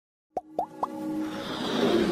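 Motion-graphics intro sound effects: three quick plops about a quarter second apart, each rising in pitch, then a swelling whoosh with music building under it.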